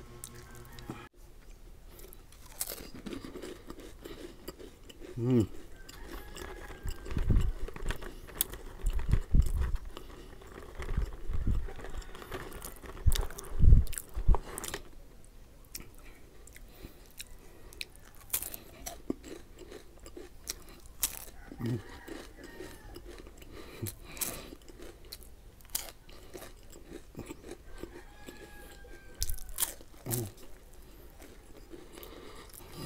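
Close-miked crunching and chewing of crisp rolled wafer sticks with pandan cream filling: many sharp crackly crunches, with a run of louder, deeper thumps in the middle. A couple of short hummed "mm" sounds.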